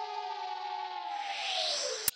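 Trap beat intro: a sustained synth chord that bends down in pitch over the last second, with a rising noise sweep building under it as a lead-in to the drop.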